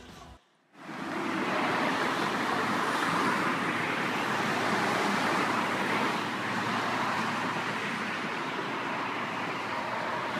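Road traffic on a multi-lane road: a steady rush of car tyres and engines going past, starting suddenly about a second in.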